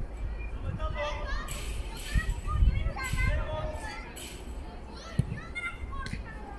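Children's voices shouting and calling across a youth football pitch, several overlapping, with a single sharp thump about five seconds in.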